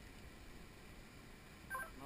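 Faint steady hiss, with one short, high ringing tone of several pitches near the end.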